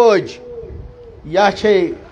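A man's voice through a PA system in a sing-song, chanted sermon delivery. A phrase trails off at the start, then comes a pause of about a second with only a faint steady tone, then another short phrase.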